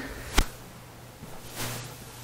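A single sharp click about half a second in, then a faint brief rustle near the end over quiet room tone.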